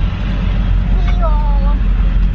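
Steady low rumble inside a car's cabin, with a short voice sound about a second in.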